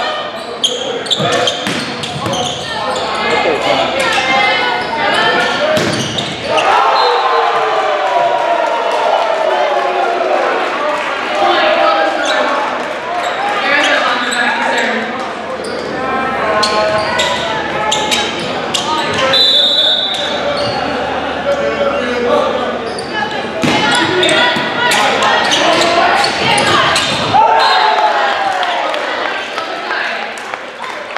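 Echoing gym during a volleyball match: players and spectators calling out and shouting, a volleyball bounced and struck. A brief high whistle blast comes about two-thirds through, then a quick run of ball hits and a shout near the end as a point is played.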